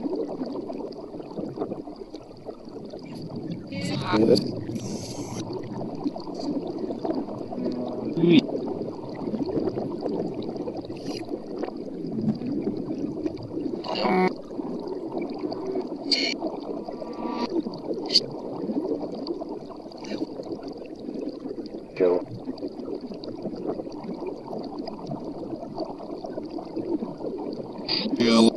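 Reversed, remixed speech fragments from an ITC 'necrophonic' sound bank: a continuous garbled, speech-like babble with no clear words, broken every few seconds by short sharp bursts, over a faint steady high whine.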